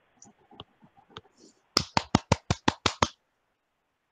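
A few faint ticks, then a quick, even run of about eight sharp clicks or claps, roughly six a second, lasting just over a second.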